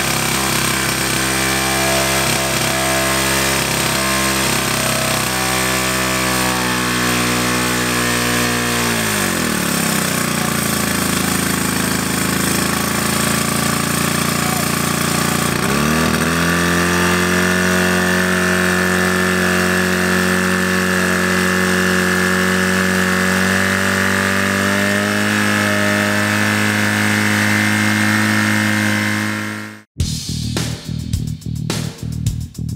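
Portable fire pump engine running hard under load, a steady note with strong harmonics. About nine seconds in its pitch drops, and about six seconds later it climbs back up and holds high until it fades out at the very end.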